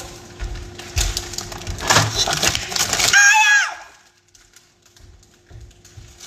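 A clear plastic bag crinkling and rustling as it is handled, then a short high-pitched vocal squeal about three seconds in.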